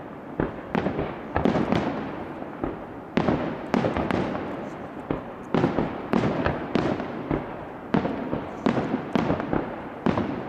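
Aerial firework shells bursting in a rapid, uneven series of sharp bangs, about two a second, each one trailing off in echo.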